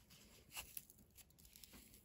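Near silence with a few faint rustles of a rolled strip of scrap fabric being handled as it is tied in a knot.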